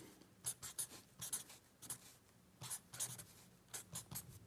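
Pen writing on notebook paper: a run of short, faint scratchy strokes with brief pauses between letters.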